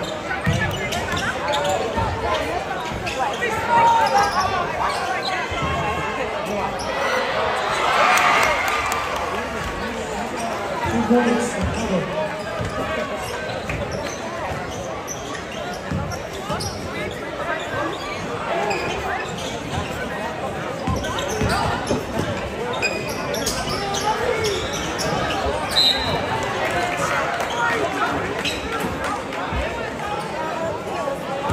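Basketball dribbled on a hardwood gym floor during live play, with repeated short bounces. Indistinct crowd voices and shouts fill the gym throughout.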